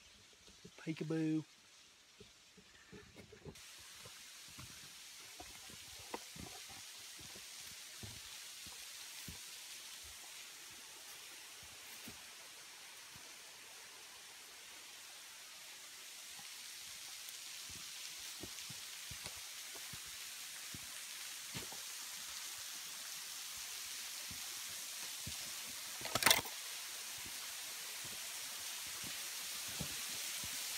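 Steady hiss of the Keown Falls waterfall, growing louder as the falls draw nearer, with faint footsteps on the trail. A single sharp click about 26 seconds in is the loudest sound.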